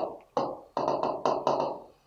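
Pen stylus tapping and scraping on an interactive whiteboard's screen during handwriting: about six short strokes in quick succession, each a sharp tap that fades quickly.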